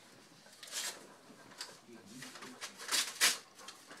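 Quiet rustling of clothing and couch cushions as two people embrace, a few short soft swishes, the loudest about three seconds in.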